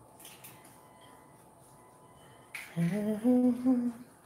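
A person humming a few notes that rise and then hold, starting near the end and lasting about a second. Before it there is a quiet stretch with faint clicks of eggs being cracked into a glass bowl.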